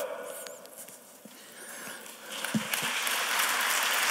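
Audience applause beginning a little over two seconds in and building to a steady level, with a couple of soft knocks as it starts.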